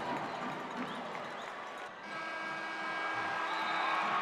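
Indistinct crowd noise in a basketball arena. It breaks off abruptly about halfway through, and a similar crowd haze returns with a faint steady hum of several tones.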